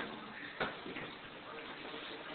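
A single sharp click about half a second in, with a fainter tick a moment later, over low room noise.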